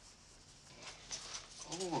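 Faint rustling of clothing as two people come together in an embrace, then a short, breathy, moan-like 'oh' from a woman near the end.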